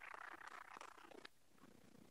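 Faint applause from a few people clapping, which stops abruptly after about a second.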